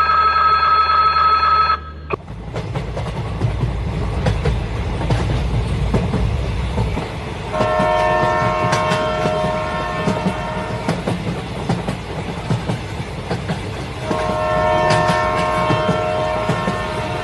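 A train running on rails, with a steady rumble and clatter and two long horn blasts: one from about halfway through lasting some three seconds, and another starting near the end. A steady tone cuts off about two seconds in, before the running sound takes over.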